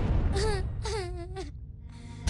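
A young girl crying out in two short wailing sobs, about half a second and a second in. At the start a rush of noise dies away.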